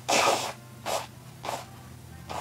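A woman blowing her nose into a tissue: one loud blow about half a second long, then two shorter, weaker blows.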